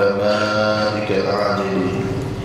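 A man chanting an Arabic prayer in a slow, melodic voice, holding long notes with a short break about a second in.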